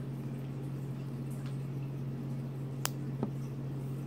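Steady low hum of room background while a silicone fitness-tracker band is handled, with two light clicks close together about three seconds in.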